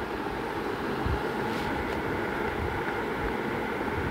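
Steady background hum and hiss of room noise with a low rumble underneath.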